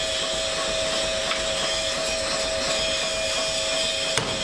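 A steady mechanical drone of forge-shop machinery, with a constant hum and a hiss, while hot steel is being worked; there are no hammer blows.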